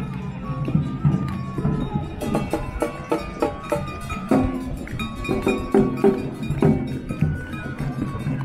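Chindon street band playing: the chindon drum set and a large bass drum strike the beat under a transverse flute melody.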